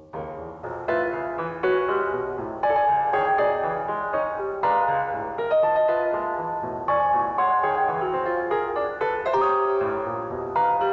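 Recorded solo piano music playing back: the second section of a piano piece at its original tempo of 120, with struck chords and repeated notes.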